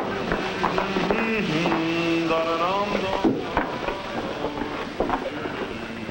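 Indistinct chatter of men's voices, with no clear words, over a steady background hubbub.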